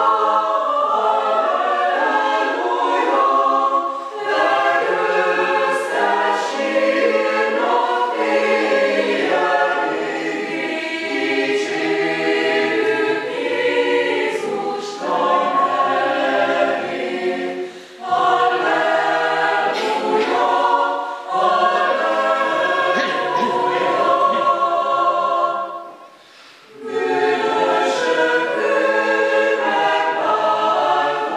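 Mixed choir of men's and women's voices singing in parts, in sustained phrases with brief breaks between them; the longest pause comes about 26 seconds in.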